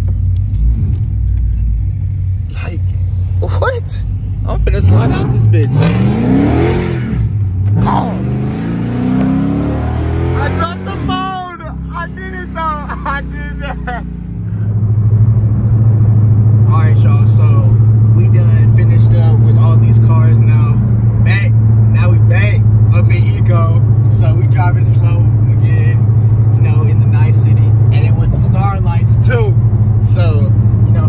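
Dodge Charger's Hemi V8 heard from inside the cabin, revving up with a rising pitch as the car accelerates from about five to ten seconds in. From about halfway it settles into a steady low drone while cruising at freeway speed.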